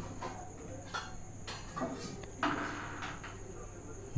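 A steel spanner clicking and scraping faintly on the flange bolts of a JCB 3DX axle housing as they are loosened, a few light metal ticks then a short scrape about two and a half seconds in. A steady high-pitched tone sits underneath.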